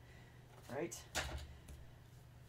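A light knock about a second in as chipboard strips are set down and handled on a cutting mat.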